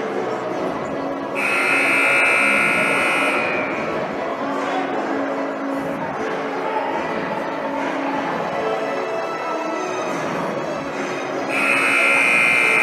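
Gym scoreboard buzzer sounding for about two seconds a little over a second in, then again near the end, with music and crowd noise in the hall between; the buzzer marks the end of the halftime break.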